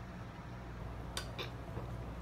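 Quiet drinking from plastic water bottles, with two faint clicks of the bottles a little past the middle, over a low steady hum.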